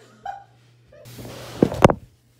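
Painter's masking tape being peeled off a wooden cabinet: a rasping tear that builds from about a second in, with two sharp cracks near the end as the tape rips free, then cuts off.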